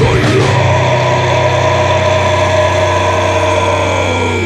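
Heavy metal band holding one sustained distorted chord that rings out after a final drum hit right at the start.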